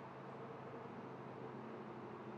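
Faint steady outdoor background hiss with a low, even hum underneath; no distinct event.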